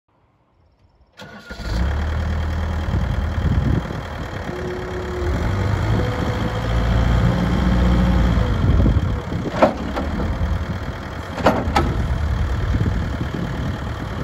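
Diesel engine of a 2007 Volvo BL70B backhoe loader running, starting about a second in, with a held hydraulic whine as the front loader arm is worked. Three sharp metal clunks come late on as the loader bucket and arm move.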